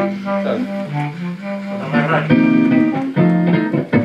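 Clarinet playing a melody of held notes over electric guitar accompaniment.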